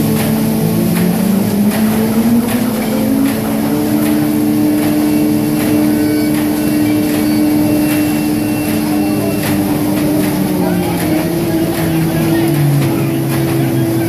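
Corrugated-board single facer line and rotary cross-cutter running: a steady machine drone whose tone rises about two seconds in as the drive changes speed, with a sharp clack about once a second as the rotary knife cuts each sheet.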